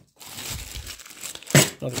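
Plastic parts bag crinkling as it is handled, then a single sharp clack about one and a half seconds in as the bag of small die-cast metal parts is set down on the table.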